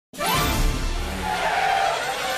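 Studio logo sting: a whooshing sound effect that starts abruptly and sweeps upward, blended with music.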